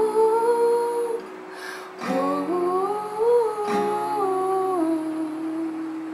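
A woman hums a slow wordless melody over an acoustic guitar, with chord strums about two seconds and about three and a half seconds in; she holds the last note near the end.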